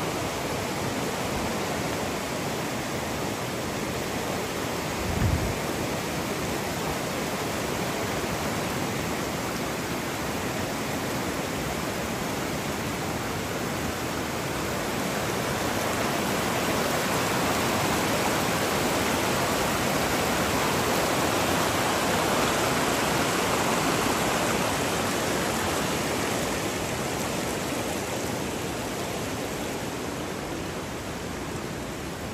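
Fast, shallow river rushing over boulders and rapids: a steady wash of water noise that grows somewhat louder for several seconds past the middle. A single brief low thump about five seconds in.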